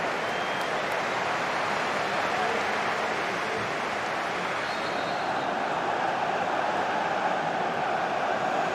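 Steady, even crowd noise under a football broadcast, with no swells or cheers. It is the simulated crowd sound laid over a match played in empty stands.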